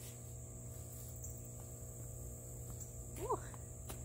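Steady, high-pitched chorus of insects, faint and unbroken, over a low background hum. A short "ooh" from a woman near the end.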